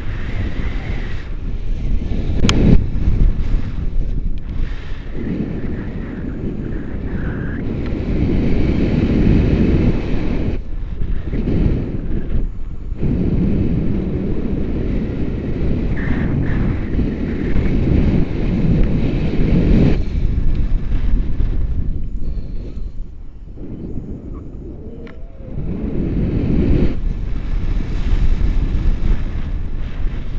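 Airflow buffeting the microphone of a pole-held action camera on a tandem paraglider in flight: a loud, gusting low rumble that eases for a couple of seconds about two-thirds of the way through. A single sharp click comes about two and a half seconds in.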